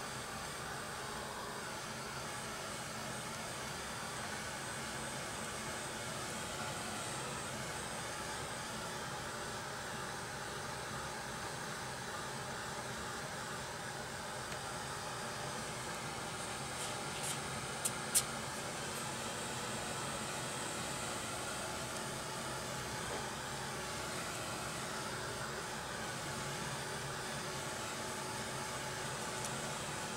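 A handheld craft heat tool blowing steadily, drying a wet coat of gesso on a paper envelope. Two brief clicks sound a little past the middle.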